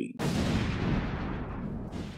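A single low boom sound effect hits about a fifth of a second in, and its rumble fades slowly.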